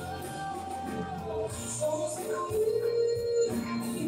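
A woman singing live with band accompaniment that includes guitar, holding one long note about three seconds in before her line moves on.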